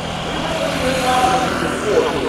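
Piper Super Cub's engine and propeller running steadily as the plane flies past.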